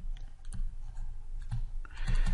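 Sharp clicks and taps from a stylus writing on a pen tablet, about one every half second, over a steady low hum.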